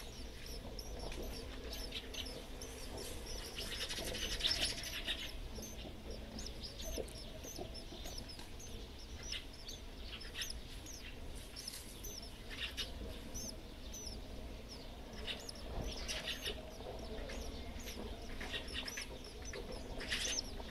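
Sparrows chirping in a nest box during a feeding: short, high-pitched cheeps repeated throughout, crowding into quick flurries several times.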